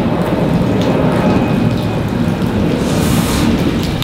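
Squid stir-frying in a wok on a portable stove: a steady, loud sizzle with a low rumble under it.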